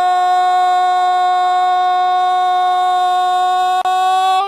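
A TV football commentator's long held goal call, "gooool", sung out on one steady note at full voice, with a brief break near the end.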